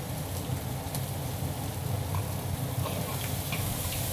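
Pieces of old rooster sizzling steadily in hot peanut oil in a large wood-fired wok as the fat renders out of the skin, with a few faint clicks of the metal ladle over a steady low hum.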